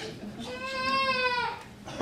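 Small mixed church choir singing one long held note, which fades out about a second and a half in before the next phrase starts.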